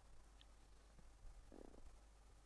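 Near silence: room tone with a faint steady low hum, and one brief soft low sound about one and a half seconds in.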